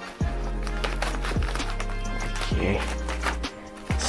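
Background music: low held notes with a sharp stroke about once a second.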